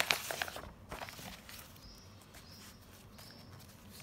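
Paper pages of a textbook being turned by hand: crackling and rustling in the first second and a half, then only faint room tone.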